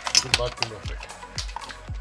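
Background music with a steady beat about twice a second and a voice in it. About a quarter second in there is a sharp splash and clatter as mussels are tipped from a bowl into boiling broth.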